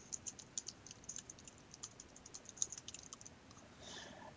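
Faint typing on a laptop keyboard: a quick, irregular string of light key clicks that thins out near the end.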